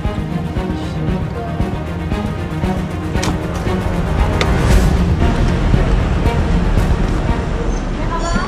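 Background music with a steady low rumble beneath it.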